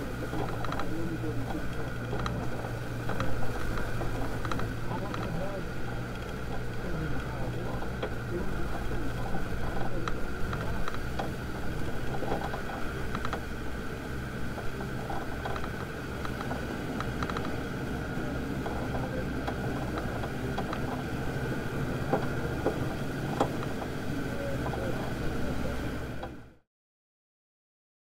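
Land Rover Defender Td5 five-cylinder turbodiesel running at a steady engine note as it drives along a rough dirt track, with scattered small knocks and rattles from the bumps.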